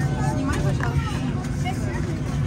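Steady low cabin hum of a stationary airliner, with passengers' voices faintly in the background.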